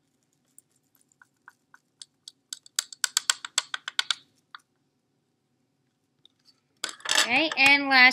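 A quick run of light clicks and clinks for about two seconds, from hands working a cotton swab over a plastic Petri dish of agar. A voice starts near the end.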